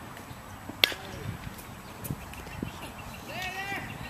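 A single sharp crack about a second in, as a pitched baseball reaches home plate, with a few fainter knocks after it. Shouting voices start near the end.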